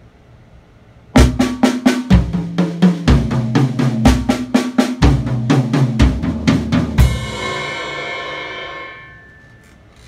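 Acoustic drum kit playing a pattern of steady single strokes around the snare and three toms (snare, tom one, tom two, snare, tom two, tom three), with a bass drum thump about once a second. It starts about a second in and ends about seven seconds in on a cymbal hit that rings and fades away over about two seconds.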